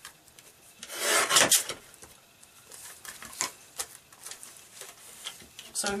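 A sliding paper trimmer's blade drawn along its rail, cutting through an acetate panel taped to card: one loud scrape about a second in, lasting around half a second. Fainter scrapes and clicks follow as the panel is handled on the trimmer.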